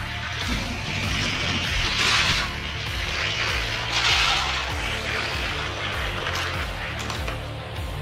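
Background music with a steady bass line, over the rolling noise of die-cast Hot Wheels cars running down orange plastic track. The rolling noise swells about two seconds in and again about four seconds in.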